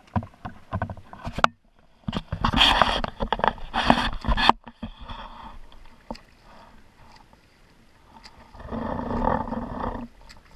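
Water splashing around a kayak, from paddle strokes and from a swimmer's front-crawl arm strokes alongside. A few sharp knocks from paddle handling come first, then a couple of seconds of loud splashing, and softer splashing near the end.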